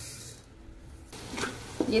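Faint sizzling of fried onions in hot oil in a pot, coming in about halfway through after a near-quiet moment.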